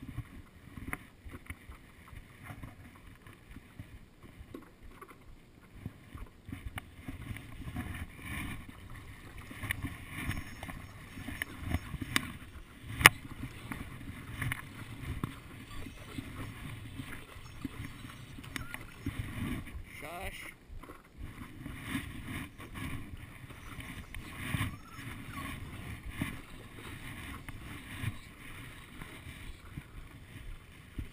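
Stand-up paddleboard paddle strokes and water sloshing and lapping against the board on calm sea, with one sharp knock about halfway through.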